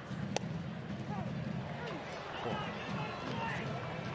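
A single sharp pop of a pitched baseball smacking into the catcher's mitt for strike three, about a third of a second in, over the steady murmur of a ballpark crowd.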